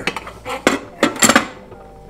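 Metal clinks and clatter as the white metal cover plate of an Aga cooker's kerosene burner compartment is lifted off: several sharp knocks with a short ring, spread over the first second and a half.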